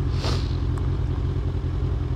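Kawasaki Ninja 1000SX's inline-four engine idling steadily while the bike waits at a standstill, with a brief hiss in the first half second.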